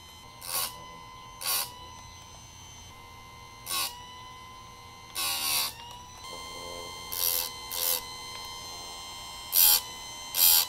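Chicago Electric electric chainsaw sharpener's grinding wheel spinning with a steady high whine, brought down onto the chain about seven times. Each pass is a short loud rasp of the wheel grinding a cutter tooth sharp, the longest about five seconds in, with some passes in quick pairs.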